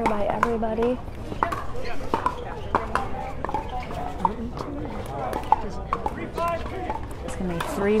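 Background voices talking, with sharp, irregularly spaced pops of hard pickleball paddles striking plastic pickleballs.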